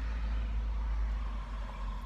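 Low, steady vehicle rumble heard from inside a parked car's cabin.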